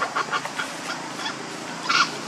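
Long-tailed macaques calling: a rapid string of short, high calls, about eight a second, dying away in the first half second, then one loud call near the end.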